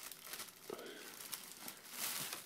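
Shiny Christmas wrapping paper on a present crinkling faintly as it is handled, a quick run of small crackles.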